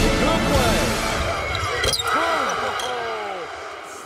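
Basketball game sound in an arena: shouting voices rising and falling in pitch and one sharp knock about two seconds in, fading out near the end.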